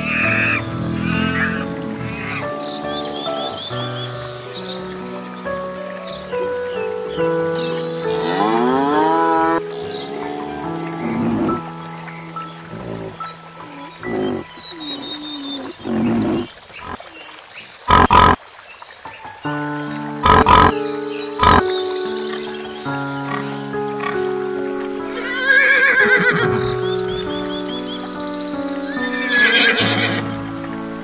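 Steady background music with animal calls laid over it, including three short, sharp loud sounds a little past halfway. Near the end come rising calls typical of a horse whinnying.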